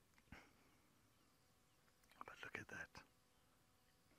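Near silence, with a faint whisper of a few syllables about two seconds in and a soft click near the start.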